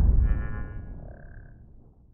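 Intro sound effect for an animated title: the low rumbling tail of a whoosh dying away over about two seconds, with a brief high shimmer early on and a short ringing tone about a second in.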